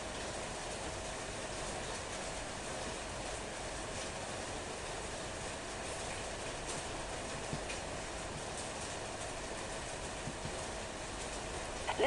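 Steady background hiss and room noise with a faint steady hum, and a few faint clicks from a computer mouse.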